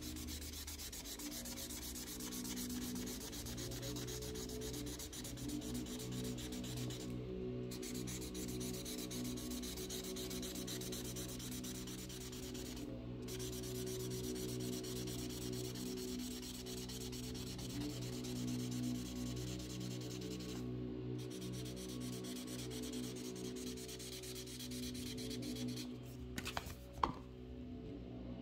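The felt tip of an Imagine Ink mess-free marker scrubbing rapidly back and forth on the special colouring paper: a continuous scratchy scribbling that stops briefly three times as the marker is lifted. There is a short sharp tap near the end.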